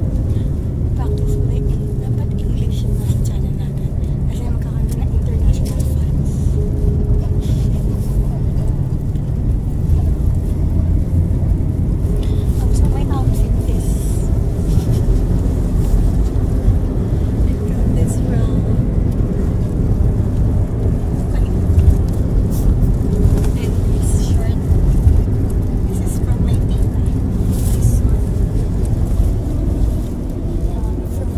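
Steady low rumble of a moving car's cabin and road noise, heard from the back seat, with people talking and laughing over it.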